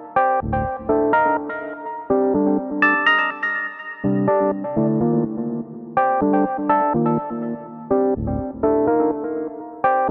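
Deep techno: a synthesizer sequence of short plucked notes, about four a second, in phrases that repeat every couple of seconds. A deep bass note sounds under it near the start and again near the end, and a held higher chord rings out about three seconds in.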